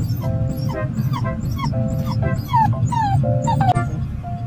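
Bernedoodle dog whimpering: a run of short, high whines, each falling in pitch, about two a second, a sign of discomfort just after being neutered.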